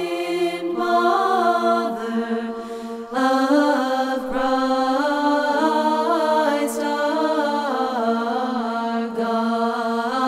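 Unaccompanied vocal chant in an Orthodox church style: voices hold a steady drone beneath a slowly moving melody. A new phrase enters about three seconds in.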